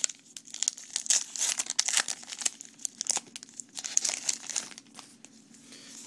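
A trading-card pack wrapper torn open and crinkled by hand: a quick run of sharp crackles that thins out near the end.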